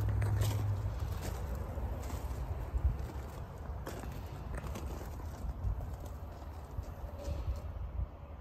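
Handling noise of a handheld camera: a low rumble on the microphone with scattered light clicks and knocks, and crunching footsteps on gravel.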